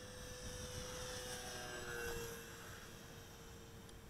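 Electric motor and propeller of an E-flite P-47 Thunderbolt radio-controlled plane whining faintly overhead, growing louder to about halfway and then fading, its pitch dropping slightly.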